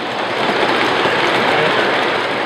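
Model trains running on a layout's track: a steady, even rumble of wheels on rail, swelling slightly.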